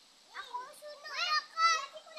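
A small child's high-pitched voice talking in short phrases.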